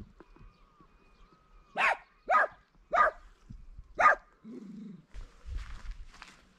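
Long-haired dachshund barking four times, short sharp barks about half a second to a second apart, directed at deer and not intimidating them at all.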